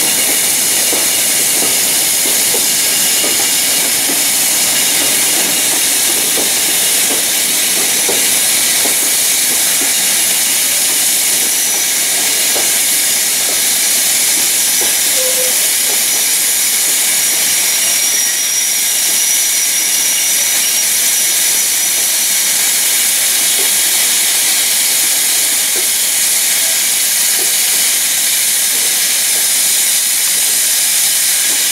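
BR Standard Class 4MT 2-6-4 tank engine 80080 standing at the platform, hissing steam steadily.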